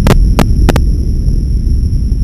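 Animated rockfall sound effect: a loud low rumble, with a few sharp cracks in the first second.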